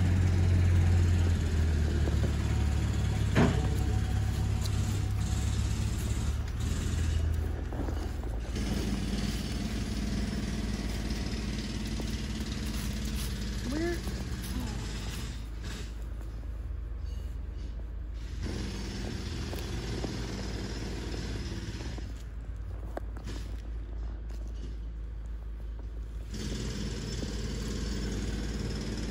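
A vehicle engine running with a steady low hum, louder in the first several seconds and then quieter.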